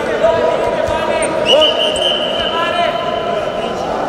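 A referee's whistle blown in one long steady blast from about a second and a half in until just before the end, stopping the action in a Greco-Roman wrestling bout. Voices call out around the mat throughout.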